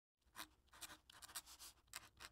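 Faint scratching of a pen writing on paper, a quick run of irregular strokes, used as a sound effect while a handwritten-style title appears.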